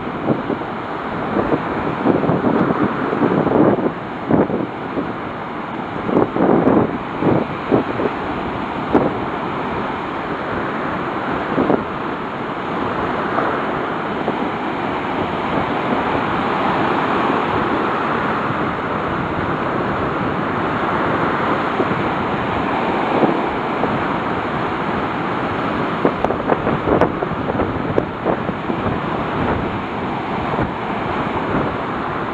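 Waves breaking and washing up a sand beach in a steady rush, with wind buffeting the microphone in gusts during the first dozen seconds and again near the end.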